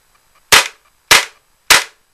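Tokyo Marui Smith & Wesson M&P 9 gas blowback airsoft pistol firing three shots about half a second apart, each a sharp crack as the gas drives the slide back and forward. The slide cycles exceptionally fast.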